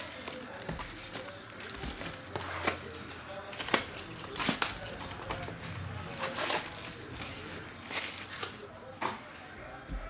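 A trading card pack's foil wrapper being torn open and crinkled by hand, with handling of the cardboard hobby box: a string of short, sharp crackles and rips.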